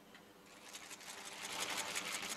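Rapid, dense, irregular clicking that starts about half a second in and grows louder.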